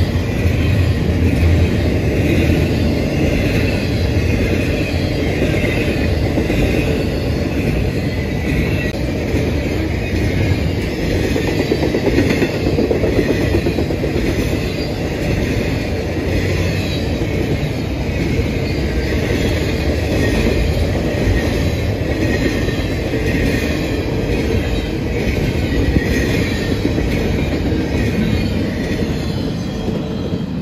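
Double-stack intermodal freight train rolling past close by: a steady rumble and clatter of the well cars' wheels on the rail, with a wavering high-pitched wheel squeal over it. It eases off near the end as the last cars go by.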